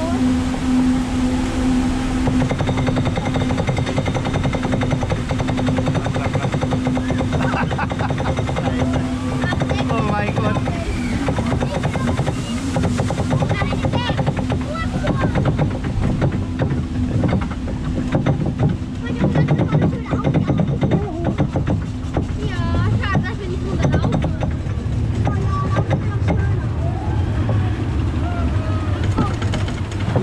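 Water-ride boat climbing a conveyor lift hill with a steady hum from the lift for roughly the first ten seconds. Then a rushing, rattling noise of water and boat as it runs down the chute, with scattered shouting voices.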